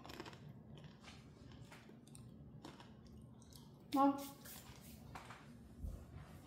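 A person chewing a mouthful of taco salad with tortilla chips, with faint crunchy crackles throughout.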